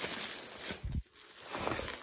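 Plastic bag and bubble wrap rustling and crinkling as a wrapped hubcap is handled and unwrapped, with a soft thump and a brief lull about halfway through.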